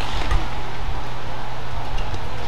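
Steady low hum of an indoor badminton hall during a rally, with faint racket strikes on the shuttlecock and a soft footfall thump about a third of a second in.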